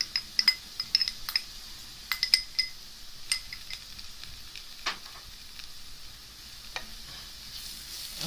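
A metal spoon taps and scrapes against a glass bowl and the pan as ginger-garlic paste is knocked off into onions in hot oil. The clinks are sharp and ringing, most frequent in the first few seconds, over a faint sizzle. Stirring starts near the end.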